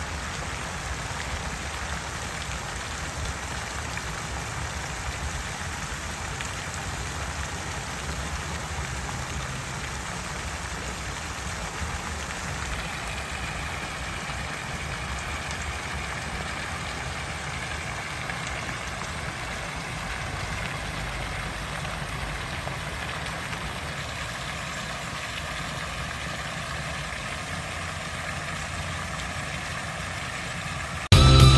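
Tiered fountain's water jets splashing steadily into its basins and pool, a continuous even hiss with a low rumble underneath.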